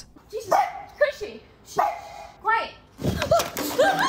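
A small dog barking several times, the barks short and separate, with a knock about three seconds in.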